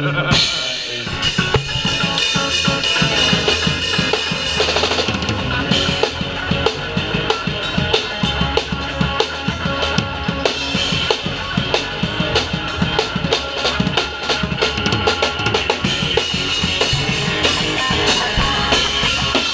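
Punk-ska band playing live, with the drum kit loud and close: a fast, driving beat of kick, snare and crashing cymbals over the band. The song kicks in suddenly right at the start.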